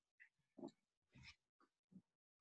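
Near silence over a video call, with three or four faint, brief noises.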